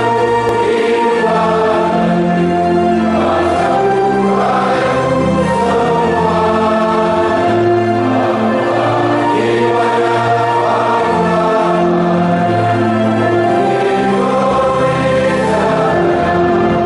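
A group of voices singing together in chorus, a slow song in long held notes over a low sustained accompaniment.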